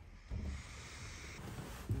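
Faint rustling of a duvet and handling noise, with a soft bump just before the end.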